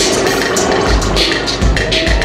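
A rock band playing, with a steady drum beat and regular cymbal hits over bass and guitar.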